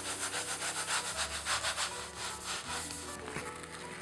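A baren rubbed in quick, rhythmic circular strokes over paper laid on an inked woodblock, a dry scratchy rubbing that presses the colour into the print. The strokes are strongest in the first couple of seconds and weaken toward the end.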